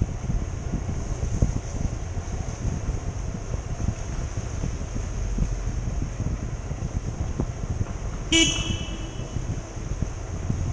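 Low rumble of a motorbike and wind moving through a tunnel, with a steady high hiss. About eight seconds in, a vehicle horn gives one short honk.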